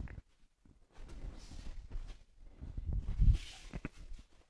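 Bare feet stepping and shuffling on a judo mat, with clothing rustling as two men reach and pull for grips; the heaviest thud comes about three seconds in.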